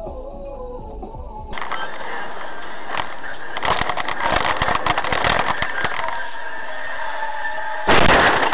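Noise inside a van cab driving fast on a wet highway: a steady hiss of tyres and rain spray crackling with fine pattering, with music playing over it. Before this, for about the first second and a half, there is a quieter low rumble.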